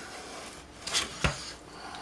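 Knife slicing along a catfish's spine on a cutting board: a short scrape about a second in, then a light knock.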